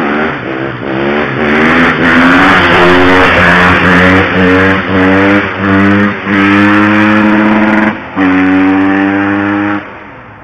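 Motorcycle engine accelerating hard through the gears at speed, loud. The pitch climbs in each gear and dips briefly at each of several upshifts, then holds a steady high note for the last couple of seconds.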